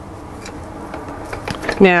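Hand-cranked pasta machine rolling a sheet of polymer clay together with a flexible plastic texture sheet through its rollers: a faint, steady mechanical noise with a few light clicks.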